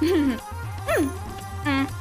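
Background music with a steady low beat, over which a short yelp-like sound sweeps sharply up and back down about a second in.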